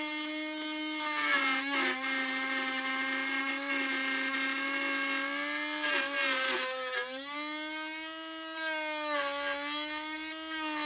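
Dremel rotary tool in the 565 router attachment, running a 561 spiral cutting bit through a wood-skinned foam-core wing. The motor holds a steady high-pitched whine that sags in pitch and recovers as the bit bites into the material, about two seconds in and again around six to seven seconds.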